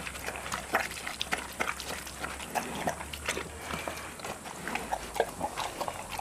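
A bear eating corn-and-barley porridge from a trough, lapping and smacking with irregular wet clicks several times a second.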